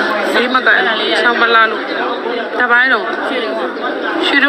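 Overlapping chatter of several voices talking at once, with no other sound standing out.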